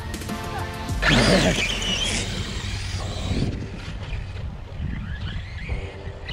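Arrma Kraton 6S BLX RC truck launching hard about a second in: its brushless motor whine rises sharply in pitch along with a rush of tyres spinning on loose dirt, then the sound fades as the truck pulls away.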